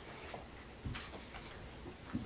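A few soft knocks and clicks with a light rustle, about a second in and again near the end, over faint room tone: handling noise and footsteps of people moving at a panel table and podium.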